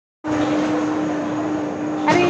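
Steady mechanical hum with one constant low tone, starting a moment in and holding level throughout.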